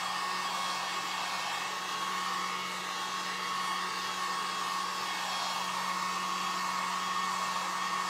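Electric heat gun blowing steadily, a constant rush of air with a thin steady whine, drying wet acrylic paint.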